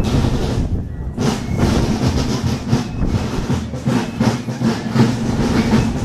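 Many marchers' footsteps treading on asphalt in an uneven, clattering patter, over a steady crowd murmur.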